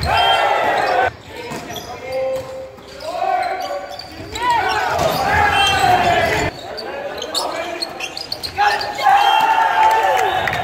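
Volleyball rally in a reverberant gym: players' raised voices calling out, mixed with the thumps of the ball being struck and bouncing.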